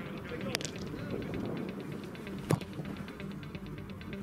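A football kicked hard in a free kick: one sharp thump about two and a half seconds in, with a lighter knock about half a second in. Background music runs underneath.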